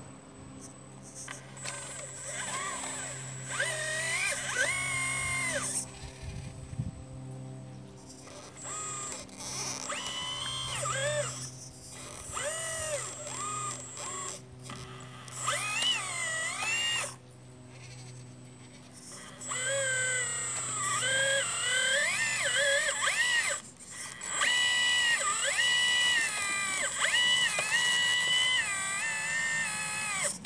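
Model hydraulic excavator's electric pump and valves whining. The pitch rises and falls in short spells of a second or two, with pauses between them, over a steady low hum.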